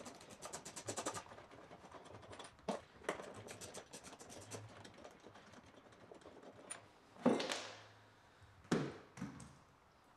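Socket ratchet clicking rapidly as a 10 mm bolt is backed out of a golf cart seat back's plastic cap, with further bursts of ratchet ticks. Later come a scrape and a sharp knock as the loosened parts are handled on the bench.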